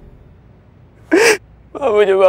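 A young man crying out once in a short, loud sob about a second in, then starting to plead in a tearful, broken voice.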